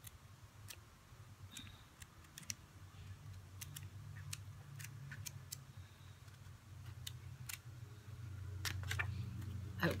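Pages of a paper sticker pad being flipped by hand, giving scattered light paper clicks and rustles, over a low steady hum that grows louder about eight seconds in.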